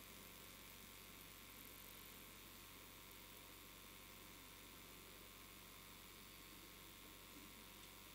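Near silence: the recording's faint steady hiss with a low electrical hum beneath it.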